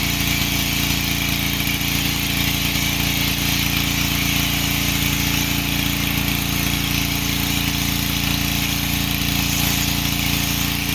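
Ryobi pressure washer's engine running steadily, with the hiss of the foam cannon spraying soap.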